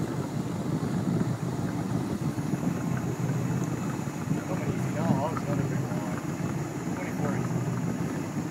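Steady low rumble of a boat's outboard motor running at trolling speed, mixed with wind on the microphone; a brief faint voice comes in about five seconds in.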